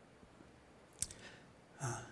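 Quiet room tone with a single sharp click about a second in, then a short audible breath or sigh from the lecturer near the end, just before he starts to speak.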